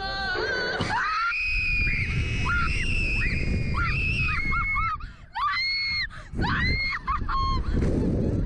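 Two girls screaming on a Slingshot ride as it launches them into the air: a rising shriek just under a second in, then a string of high held screams. Wind rushes over the ride camera's microphone underneath.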